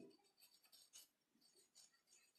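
Faint scratching of a felt-tip marker on paper in short strokes as a word is written.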